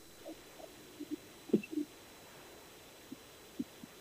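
A pause in talk-radio audio: mostly quiet, broken by a few faint, brief low sounds scattered through it.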